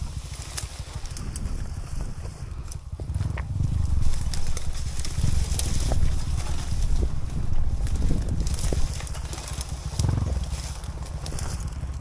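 Dirt bike engine running at low revs, a rapid low thumping that grows louder for a few seconds in the middle.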